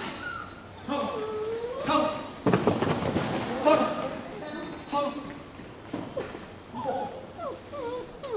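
A dog whining and yipping, mixed with a person's voice. A louder burst of noise starts about two and a half seconds in and lasts about a second and a half.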